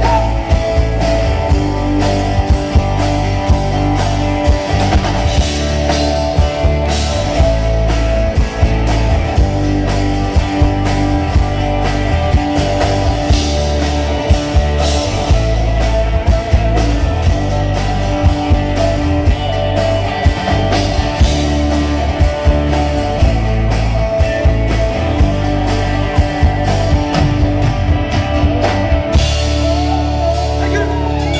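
Live country rock band playing, with electric guitars, bass and a drum kit keeping a steady beat.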